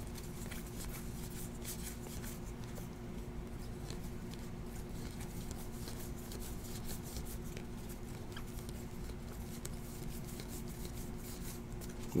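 Stack of Bowman baseball trading cards being thumbed through one card at a time: many small, irregular clicks and rustles of card stock sliding over card stock, over a faint steady hum.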